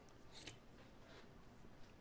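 Near silence with one faint, brief click about half a second in: a metal spoon against a stainless-steel bowl.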